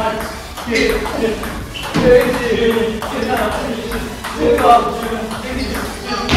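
Table tennis rally: the ball struck back and forth by rubber-faced paddles and bouncing on the table, a quick run of sharp pings. Players' voices and shouts run over it.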